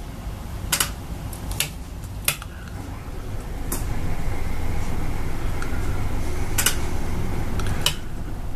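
Cummins Onan RV generator being primed from its remote panel: the electric fuel pump hums steadily while the stop/prime switch is held, swelling about four seconds in. A few sharp clicks are scattered through.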